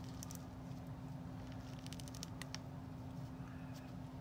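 Faint plastic clicks and light rustling as a doll's snap-on hair piece is handled and pressed onto its head, in small clusters near the start, about two seconds in and near the end, over a steady low hum.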